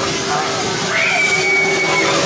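A high-pitched scream rises about a second in and is held on one steady note to the end, over a low steady drone.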